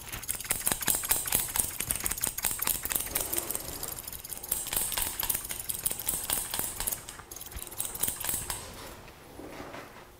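Barber's scissors snipping short hair over a comb in quick, continuous cuts, a dense run of crisp metallic clicks that eases off near the end.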